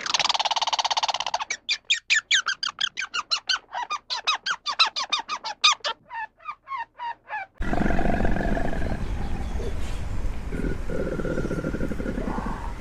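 Eastern gray squirrel alarm calling: a rapid buzzy chatter, then a run of sharp chirps at about four a second that slow and fade. Near the end the calls stop abruptly and give way to steady outdoor background noise.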